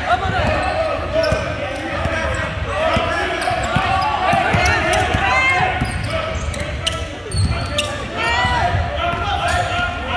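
Basketball game sounds: the ball bouncing on a hardwood court among the chatter of voices, with short sneaker squeaks now and then, echoing in a large gym.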